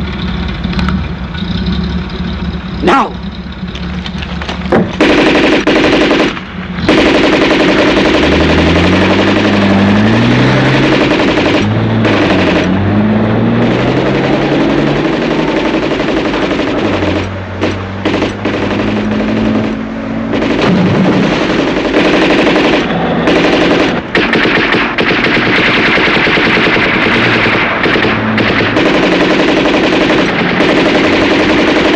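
Sustained machine-gun fire in a staged battle, starting about five seconds in and running on without let-up. Underneath, a vehicle engine revs up in rising steps.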